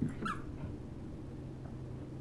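A small dog giving a brief whine just after the start, over a steady low hum.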